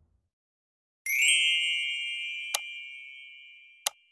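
Like-and-subscribe button sound effect: a bright chime strikes about a second in and rings on, fading slowly, with two sharp mouse-click sounds over it.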